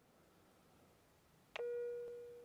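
Dead silence, then about one and a half seconds in a single steady electronic beep starts sharply and holds. It is the alarm of a blood-oxygen monitor, warning that the wearer's blood oxygen is dropping.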